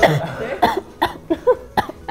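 A young woman coughing into her hand, a run of about six short coughs.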